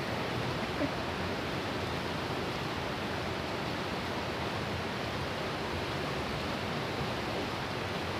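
Steady rush of a fast-flowing river running over rocks and through small rapids.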